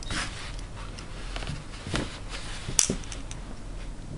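Small clicks and rubbing from eyeglass parts handled in the fingers as a plastic temple tip is fitted back onto a metal temple arm, with one sharp click near three seconds in.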